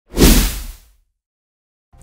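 News-intro logo sting: a single whoosh with a low boom under it, lasting under a second.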